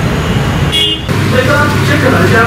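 Road traffic noise with a short vehicle horn toot about a second in, followed by indistinct voices.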